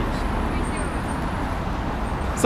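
Busy city street traffic: a steady rumble of road traffic with cars passing.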